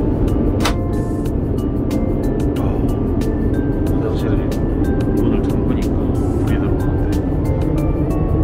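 Loud, steady roar of an airliner in flight, heard inside the cabin, with background music laid over it.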